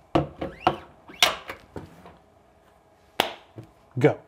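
Several sharp clicks and knocks from the repair tools and phone being handled on a desk. There are about six in the first two seconds and two more a little after three seconds in.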